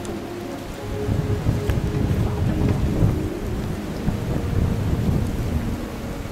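Wind gusting across the microphone: a rough, irregular low rumble that swells about a second in and eases off near the end.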